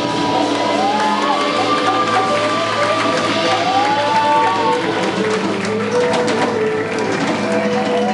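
Live band music with long held notes gliding slowly in pitch over percussion, with hand-clapping and some cheering from the people in the room.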